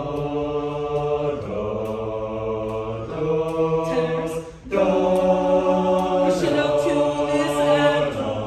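A mixed-voice student choir singing a cappella: a slow series of held chords, each lasting about a second and a half, with a brief break for breath a little past halfway.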